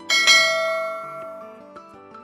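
A notification-bell chime sound effect struck once just after the start, ringing out and fading over about a second and a half.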